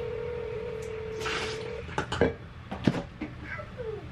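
Phone ringback tone of an outgoing call, heard over speakerphone: one steady ring about two seconds long that then stops. It is followed by a brief hiss and a few clicks and knocks.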